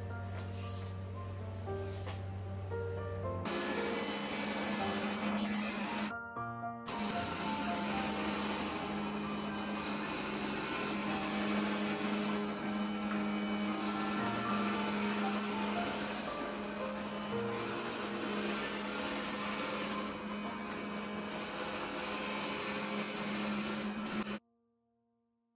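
Background music, joined about three and a half seconds in by a robot vacuum-mop running: a steady motor whirr with a low hum.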